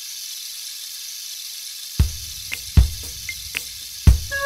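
Steady hiss of heavy rain, with a few sharp, deep thumps starting about two seconds in.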